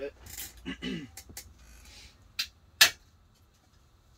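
A few short, sharp snaps as a thick chocolate bar is broken into pieces by hand on a plate. The last snap, near three seconds in, is the loudest.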